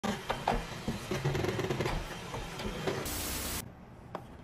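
Xiaomi Mi robot vacuum-mop 1C running, its motor and brushes making a steady mechanical noise with irregular clicks and rattles. About three seconds in there is a loud hiss that stops suddenly half a second later.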